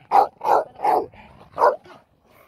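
A dog barking: four short, sharp barks, the last one after a brief pause, as the dogs are worked up into excitement.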